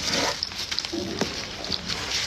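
Close-up chewing and wet mouth sounds of someone eating a chicken wrap, with scattered small clicks.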